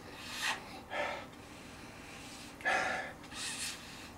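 A man sniffing deeply at a glass of beer to take in its aroma: four short, airy sniffs in two pairs, the third the loudest.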